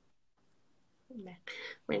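Speech over a video call: a brief dead gap, then a woman's voice starting about a second in.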